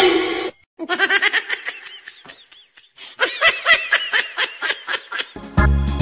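A person laughing in a rapid run of high-pitched bursts for about four seconds. Music cuts in near the end.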